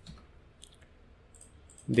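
A few faint, scattered clicks from a computer keyboard and mouse.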